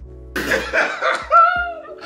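Laughter over background music.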